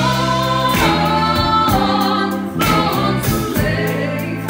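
A live rock band with a female lead singer: she sings long held notes, each about a second long, over electric guitar, bass and drums.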